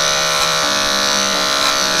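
Andis AG electric dog clippers fitted with a #10 blade running with a steady buzz while shaving the short hair on a standard poodle's face.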